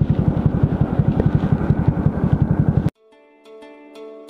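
Hero Splendor Plus's single-cylinder four-stroke engine idling with an even, fast pulse. It cuts off suddenly about three seconds in, and soft plucked-string music takes over.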